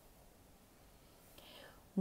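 Very quiet room tone, then a faint breath drawn in near the end.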